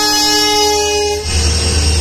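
Air horn of a passing WDP4D diesel locomotive sounding one steady chord, cutting off about a second in. The low rumble of the locomotive's engine and wheels follows as it passes close by.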